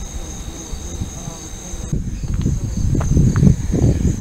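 Insects in the field grass trilling steadily in a thin, high tone, over a low rumble.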